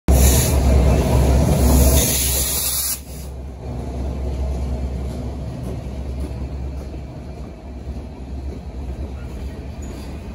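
Slow-moving freight train passing close by: a diesel locomotive's deep rumble with a loud hiss that cuts off suddenly about three seconds in, then the quieter steady rolling of tank cars over the rails.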